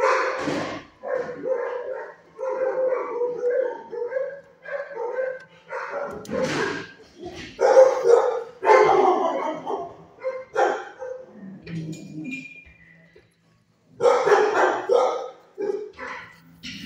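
A dog barking repeatedly in a string of pitched barks with short gaps, with a brief pause near the end.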